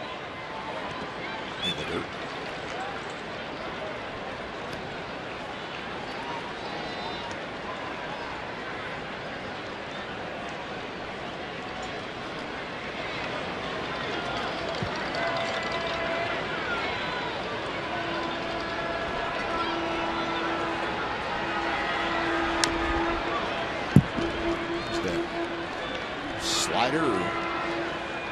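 Ballpark crowd ambience: a steady murmur of spectators with scattered voices. A held tone comes and goes over the last several seconds, and there is one sharp crack near the end.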